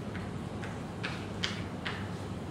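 Chalk writing on a blackboard: a series of short, sharp taps and scrapes, the clearest three about half a second apart in the second half, over a steady low room hum.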